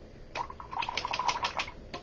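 A quick run of about ten light clicks or taps in a little over a second, with a faint ringing tone under them.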